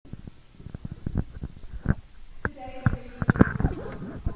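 Handling noise on a lectern microphone: a run of sharp knocks and low thumps that grows louder in the second half, with a few faint voice sounds mixed in.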